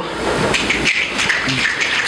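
A slam audience reacting during a pause in the poem: a dense, steady crackle of noise about as loud as the poet's voice.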